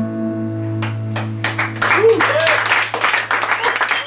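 Electric guitar's final chord ringing out as the song ends, then audience applause starting about a second in, with a short cheer just after two seconds.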